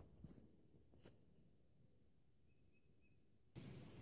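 Near silence: quiet outdoor background with a faint click about a second in. Shortly before the end a steady high-pitched hiss starts abruptly.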